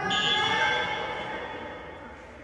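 Referee's whistle, one shrill blast signalling the serve. It rings on in the hall and fades away over about a second and a half.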